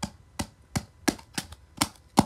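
Repeated sharp blows at a steady pace, about three a second, as a DVD and its plastic case are broken up.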